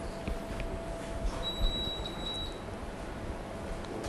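Quiet room background noise, with a faint high-pitched steady tone lasting about a second near the middle.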